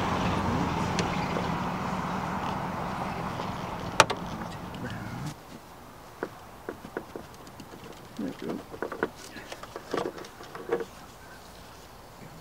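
Wiper arm being wiggled off its splined pivot shaft, with a single sharp click about four seconds in, over a steady vehicle engine hum that slowly fades and stops abruptly at a cut. After that, quieter scattered small clicks and knocks of gloved hands handling the wiper arm at its pivot.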